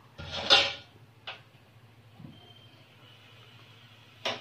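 Aluminium cooking-pot lid lifted off with a short metallic scrape about half a second in, followed by a single light clink about a second later.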